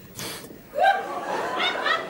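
Laughter breaks out about three-quarters of a second in and runs to the end, after a short breathy rush of noise near the start.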